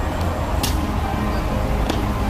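Two sharp knocks about a second and a quarter apart from the honour guards' drill movements, over a steady low outdoor rumble.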